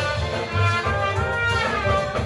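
Live jazz combo: a trumpet plays a solo line over plucked upright bass, piano and drums. Near the end the trumpet holds a longer note that sags slightly in pitch.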